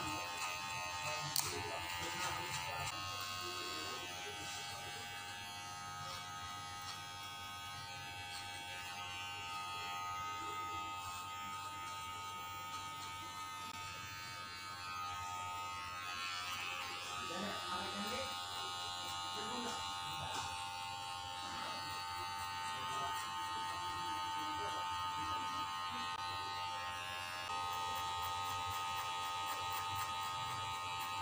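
Electric hair clippers buzzing steadily while cutting short hair at the nape for a taper. The buzz gets a little louder in the last few seconds, with faint voices in the room.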